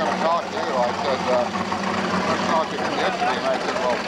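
Several men's voices talking and laughing over one another, the words not clear, over a steady background noise.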